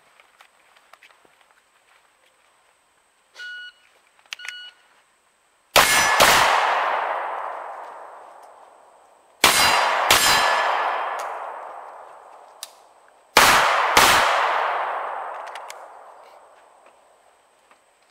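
Two short electronic beeps a second apart from a shot timer, then three double taps of pistol fire about four seconds apart, each pair of shots followed by a long echoing tail.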